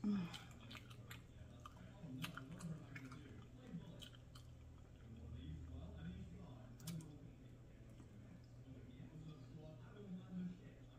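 A person chewing a mouthful of chopped cheese slider on a soft bun, faint, with scattered wet mouth clicks. There is a short louder sound right at the start.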